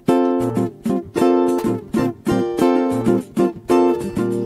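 Nylon-string acoustic guitar and cavaquinho strumming the instrumental intro of a partido-alto samba, short chords struck in a clipped, stop-start rhythm.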